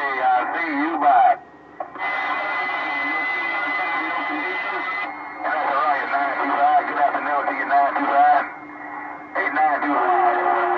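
Voices of distant stations coming in over a President HR2510 radio on 27.025 MHz (CB channel 6), thin and band-limited, in several transmissions with short breaks after about a second and again near the end. A steady high whistle runs under the voices for a few seconds.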